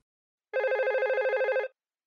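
Telephone ringtone: one rapidly trilling electronic ring, pulsing about a dozen times a second, starting about half a second in and lasting just over a second.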